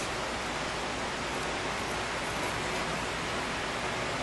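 Steady hiss of background noise, even and unchanging, with no other sound standing out.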